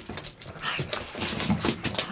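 A pug making a quick, irregular series of short excited vocal noises while playing after a walk.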